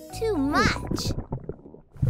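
Cartoon stomach-rumble sound effect: a gurgling growl that trails off and fades over about a second, with children's background music under it.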